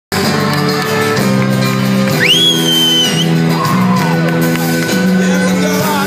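Live acoustic band playing sustained chords that change about once a second, in a large reverberant hall. About two seconds in, an audience member lets out a loud, shrill whoop that rises sharply and holds for about a second.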